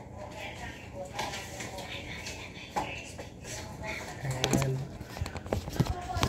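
Faint, indistinct talk with a brief held low hum about two-thirds of the way through and a few sharp clicks near the end.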